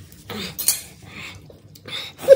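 A fork scraping and clinking against a plate while noodles are eaten, in short, irregular strokes.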